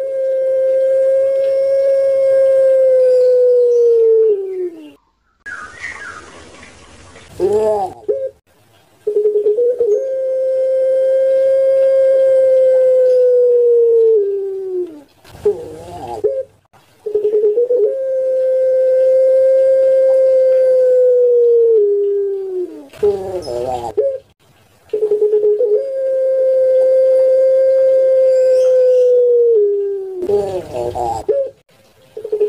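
A puter pelung, a domestic collared dove bred for long calls, cooing. It gives four long, held coos of about four to five seconds each on one steady pitch, each opening with a short stutter and sagging in pitch at the end, with short wavering coo notes between them. A brief hiss comes about six seconds in.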